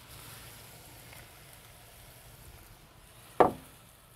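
Faint sizzling as crushed tomatoes go into a hot cast-iron Dutch oven, fading after the first second or so. A single sharp knock comes about three and a half seconds in.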